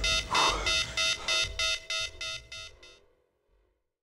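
A pulsing, alarm-like electronic tone beating about four times a second, fading out over about three seconds.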